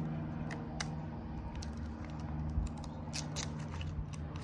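Faint scattered ticks and crackles of a paper sticker being peeled from its backing sheet and handled between the fingers, over a steady low hum.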